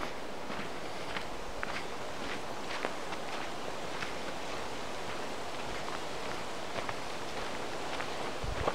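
Footsteps of a person walking through forest undergrowth, with low shrubs and dry leaves rustling and short crackles underfoot at irregular intervals, fewer in the last few seconds.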